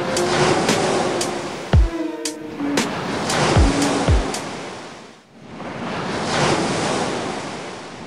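The last bars of an electronic pop song, a few deep drum hits and a held note over a wash of surf, end about five seconds in. After that only ocean waves are heard, swelling and then easing off.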